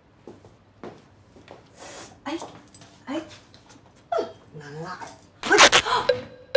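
Women's voices making short sounds without words: laughs, squeals and exclamations with gliding pitch. A loud, noisy burst comes near the end.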